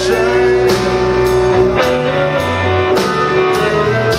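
Live blues-rock band playing: electric guitars, bass and drums with a steady beat, with some bending guitar notes.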